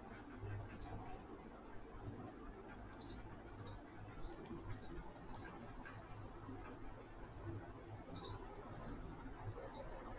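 Faint high-pitched chirp repeating at an even pace, about one and a half times a second, over a low steady hum.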